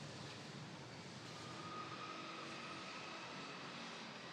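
Steady distant city background noise with a far-off engine drone; a faint thin whine comes in about a second in and fades before the end.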